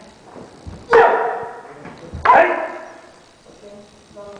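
Two sharp kiai shouts from martial artists striking with wooden staff and sword in kata, about a second and a half apart, each echoing briefly off the hall walls.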